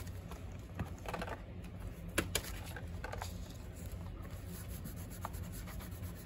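Faint rustling of paper scraps being handled and pressed down by hand, with a few light clicks and taps, over a low steady hum.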